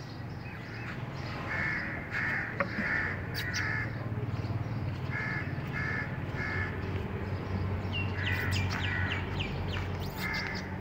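Crows cawing repeatedly, in runs of three or four short calls, over a steady low hum.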